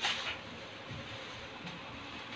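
Faint rustling of a plastic bag being handled and lifted, with a short crinkle at the very start, over low steady room noise.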